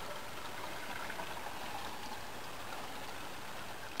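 Water poured steadily from a container into the inlet of a PVC first-flush rain diverter, making an even rushing splash. It is poured at a rate like a torrential downpour, filling the diverter chamber.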